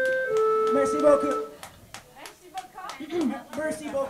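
A live band's last held notes ring out and stop about a second and a half in, followed by a few scattered claps and crowd voices.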